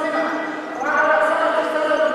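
A woman speaking into a handheld microphone, amplified through a PA, pausing briefly just before the middle.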